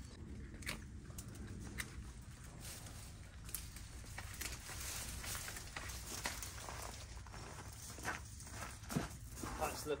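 Scattered rustling, scraping and light clicks of hand gardening: a hand weeding tool working gravelly soil, pruned branches being handled, and steps on a gravel path.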